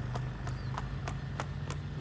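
Hooves of a chalbaz gaited horse striking a paved road, an even, quick beat of about three to four strikes a second. A steady low hum runs underneath.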